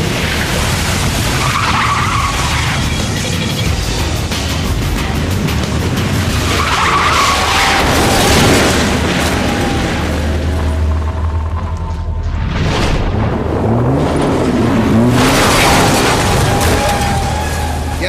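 A van driven hard through corners, its engine revving and its tyres skidding, under background music.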